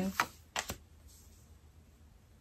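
Three short, sharp clicks in the first second as a tarot card is drawn from the deck and laid down on the table.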